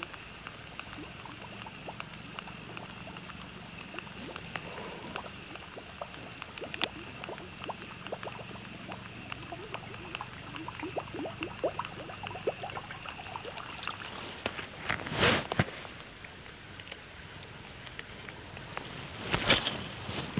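A steady high-pitched insect drone with faint scattered ticks, broken by two louder sudden noises, one about three-quarters of the way in and one just before the end.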